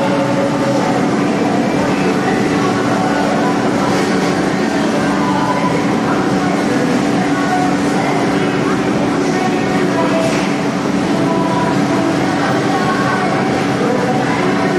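A steady, loud mechanical hum from the running mechanical bull ride, holding an even level throughout, with people's voices faintly mixed in.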